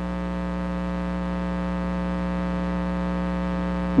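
Steady electrical mains hum with many even overtones, unchanging throughout; no other sound stands out.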